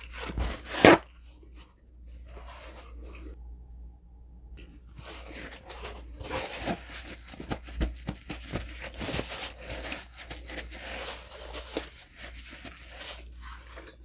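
A paper towel sheet ripped off the roll, once and sharply, about a second in. From about five seconds on, the paper towel rustles and crinkles in a long irregular run as it is held and rubbed against the face.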